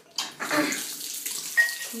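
Bathroom sink tap turned on, water running steadily into the basin, with a short high squeak near the end.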